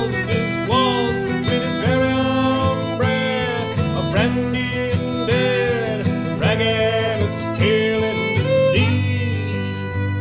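Instrumental break in a slow waltz: a fiddle plays the melody with sliding notes over a steadily strummed acoustic guitar.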